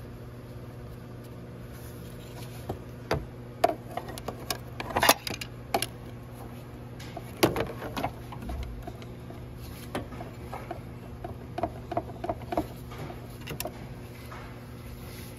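Ratchet and socket turning the high-pressure fuel pump's 10 mm mounting bolts: irregular metallic clicks and clanks. They start about three seconds in and are loudest around five and seven seconds, over a steady low hum.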